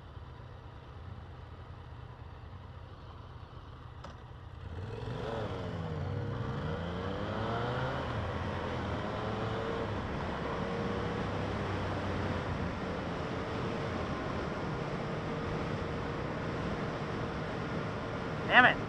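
Yamaha FZ-09's three-cylinder engine idling quietly, then about five seconds in it pulls away, the engine note climbing and dropping back through upshifts before settling into a steady cruise, with wind noise on the microphone.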